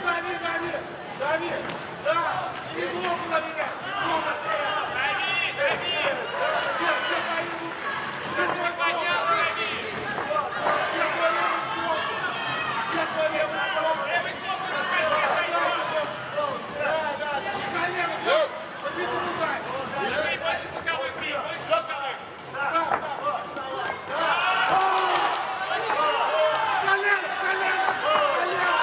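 Several men shouting over one another, fight-side voices calling out during a Muay Thai bout, with a few sharp thuds of kicks and punches landing.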